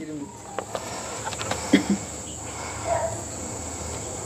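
Crickets chirring in a steady, high-pitched drone, with a few light clicks over it.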